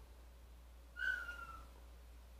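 A single short, high whistle-like tone about a second in, sliding slightly down in pitch.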